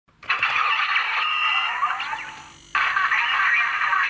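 Tinny electronic toy audio from a small speaker, a voice with sound effects. It starts sharply, fades out about two seconds in, and cuts back in abruptly near the three-second mark.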